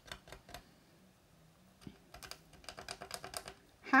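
Toothpick scratching and picking at dried chalk paste on a wooden sign: a few light clicks at first, a pause, then a quick run of small scratchy clicks in the second half.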